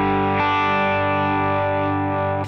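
Suhr Alt T Pro electric guitar on its bridge Thornbucker humbucker, amplified clean on the verge of breakup: a strummed chord left ringing, changing to a new chord about half a second in and held.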